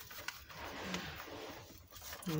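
Scissors cutting through a strip of double-sided tape: a soft scraping rustle of blade on tape and backing, with a few faint clicks.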